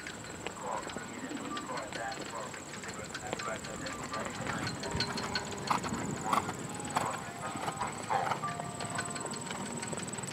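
A horse's hoofbeats on the arena footing as it moves through a dressage test, with people's voices in the background.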